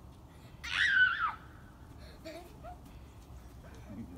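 A small child's high-pitched squeal, its pitch wavering up and down, lasting under a second about a second in.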